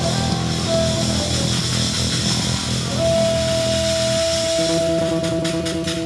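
Live rock-blues band playing with electric guitar, bass and drums. About three seconds in one high note is held while the low end thins out, and the drums come back in with regular strokes near the end.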